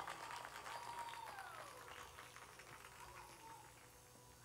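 Faint film soundtrack: quiet music and crowd sounds with scattered light clicks, slowly fading.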